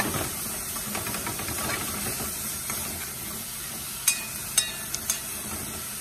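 Crushed smoked herring sizzling steadily in hot oil in a metal pot as a metal spoon stirs it, with three sharp clinks of the spoon against the pot a little after halfway.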